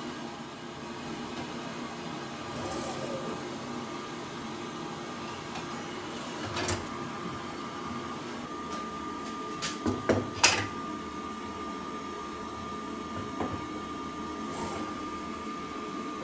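Light knocks and clicks from handling wood and parts at a miter saw, with a cluster about ten seconds in, over a steady mechanical hum. The saw's blade motor is not running.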